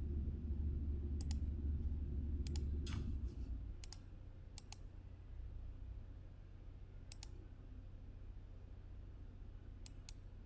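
Computer mouse button clicks, about eight sharp single clicks and close pairs spread irregularly, over a low steady hum.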